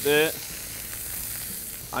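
Buttermilk-soaked bitter gourd pieces sizzling in hot oil in a frying pan, a steady hiss.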